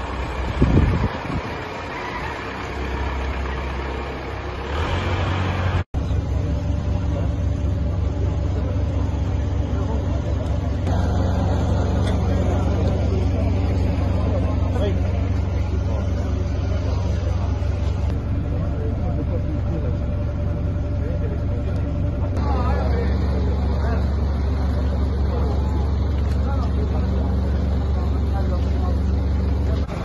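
Steady, deep engine rumble of vehicles and heavy rescue machinery, with voices mixed in, over several clips cut together; the sound changes abruptly at each cut.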